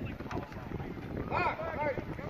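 Sideline spectators' voices shouting and calling out over wind noise on the phone microphone. The clearest calls come about halfway through.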